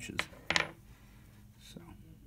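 A steel piano tuning pin is set down on a wooden workbench, making a sharp metallic clink about half a second in. A faint small tap follows near the end.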